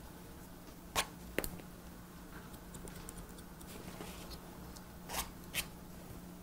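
Hair-cutting scissors snipping wet hair: two pairs of short sharp snips, each pair about half a second apart, one about a second in and one near the end, over a faint steady hum.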